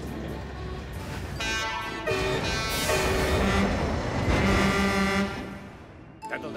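Diesel locomotive engine rumbling as the engine pulls away, with its horn sounding for several seconds from about a second and a half in. This is an animated sound effect.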